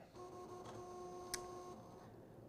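Cricut Maker cutting machine's motors whining steadily as it runs a second cutting pass on fabric that the first pass did not cut through. The whine stops a little before the end, with a short click about 1.3 seconds in.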